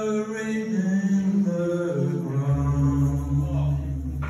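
Men's voices singing long held notes that step down in pitch, with little instrumental backing. A low steady note comes in underneath about halfway through.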